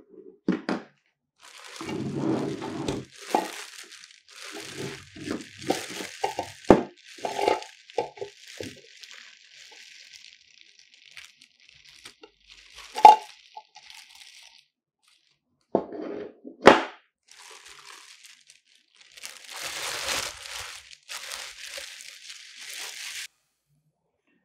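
Plastic bag crinkling and rustling as it is pulled off a Godox SL60W studio light, with a few sharp knocks and clunks from handling the light's hard body. The loudest knocks come about halfway through and again a few seconds later.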